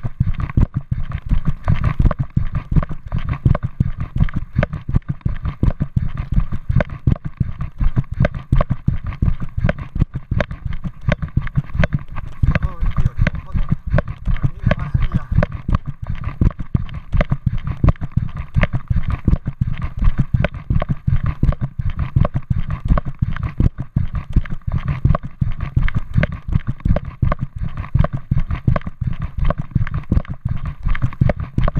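Rapid, continuous footsteps on a path, with the handheld camera knocking and jostling at every stride.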